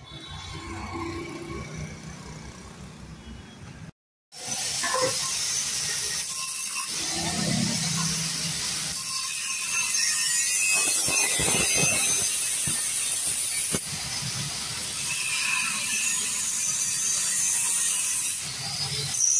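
Angle grinder cutting open the steel exhaust silencer of a Yamaha RX 135 to get at its internal filter: a steady, loud grinding hiss from about four seconds in. Before that, quieter handling of the parts.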